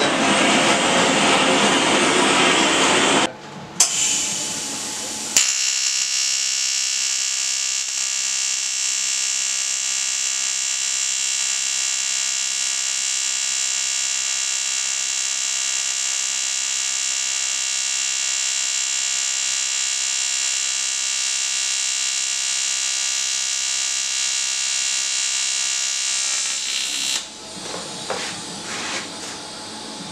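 A gas torch flame hissing as it preheats an aluminium swingarm to drive off moisture, stopping after about three seconds. From about five seconds in, a TIG welding arc buzzes steadily on the aluminium for some twenty seconds, then stops.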